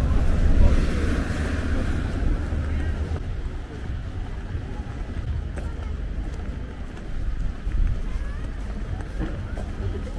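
Wind rumbling on the microphone, with passers-by talking, the voices loudest in the first couple of seconds.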